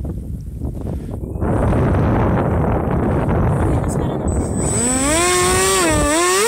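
Model aeroplane motor and propeller run up on the ground: a loud steady rush starts about a second and a half in. Near the end the pitch climbs, holds and drops as the throttle is worked, with a thin high whine over it.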